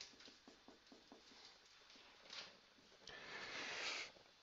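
Whiteboard marker writing on a whiteboard, mostly faint: a few soft ticks, then near the end a longer scratching stroke of the felt tip.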